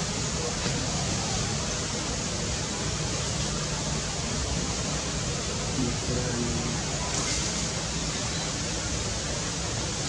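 Steady, even hiss of background noise with no clear events, with a few faint brief pitched sounds about six seconds in.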